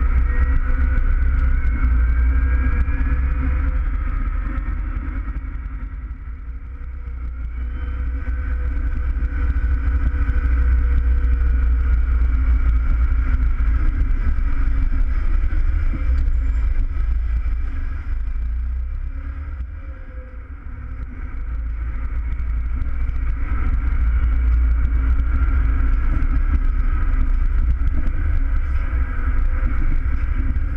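Valtra N101 tractor's engine running under load, heard from inside the cab: a deep rumble with a high whine over it. The engine eases off twice, about six seconds in and again around twenty seconds, then picks back up.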